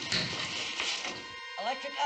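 TV soundtrack: a sudden hissing noise lasting about a second and a half over music, then a man's voice starts near the end.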